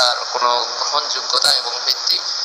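A man's voice preaching a sermon, over a steady high hiss.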